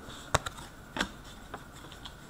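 Hockey trading cards being handled and flicked from one to the next: a few short, light clicks and taps, the sharpest about a third of a second in and another about a second in.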